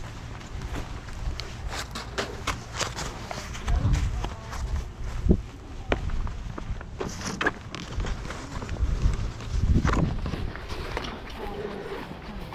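Footsteps on pavement with scattered clicks and knocks from handling equipment, over a steady low rumble, with louder thumps about four seconds in and again near ten seconds.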